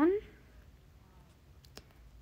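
Quiet room tone with one faint, sharp click near the end, typical of a stylus tapping a tablet screen while writing; a woman's voice trails off at the very start.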